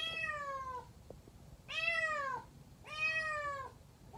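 A cat meowing three times, each meow falling in pitch.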